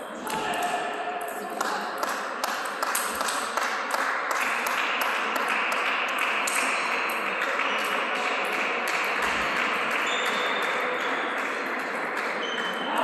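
Table tennis rally: the celluloid ball clicking in quick succession off the paddles and the table, with many strokes in the first half. Underneath is a steady hubbub of voices in a large sports hall.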